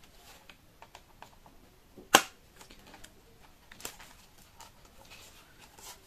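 Fingers working at the cardboard box of an eyeshadow palette to get it open: a run of small, light clicks and scratches, with one sharper click about two seconds in.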